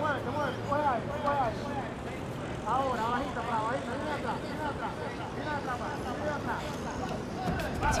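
Indistinct shouting voices in the fight arena, lower than the nearby commentary, with a steady low hum during the first few seconds.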